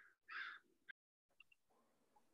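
Near silence on the call line, broken by one short, faint call about half a second in and a soft click just before the one-second mark.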